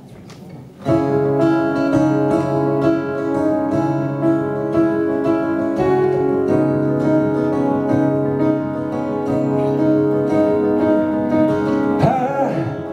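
Acoustic guitar strummed live, starting suddenly about a second in after a short quiet and ringing on in sustained chords that change every second or two: the instrumental intro before the vocal comes in.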